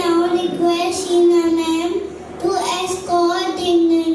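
A young child singing into a microphone, his voice held on long notes at a fairly steady pitch.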